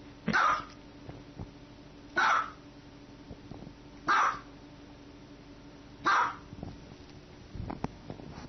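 A small dog barking four times, single sharp barks spaced about two seconds apart.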